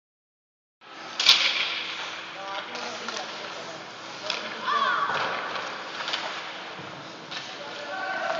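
Youth ice hockey game in an echoing indoor rink: voices from around the rink over the hall's background, with a few sharp clacks, the loudest about a second in. A voice calls out about five seconds in.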